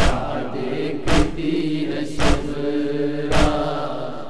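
Urdu noha chanted with a long held vocal note, accompanied by matam: hands striking the chest in a steady beat about once a second, four strikes.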